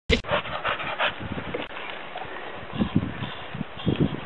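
A dog hanging from a tree branch by its jaws, breathing hard in quick noisy pants, about three a second at first, then fainter, with a few low thuds near the end.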